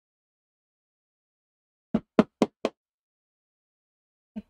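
Four quick mallet strikes on a small pricking iron, driving it through the leather to punch stitching holes, about two seconds in and about four blows a second.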